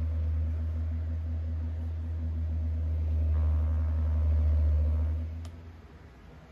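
A loud, steady low mechanical hum that swells slightly, then dies away about five seconds in, followed by a single click.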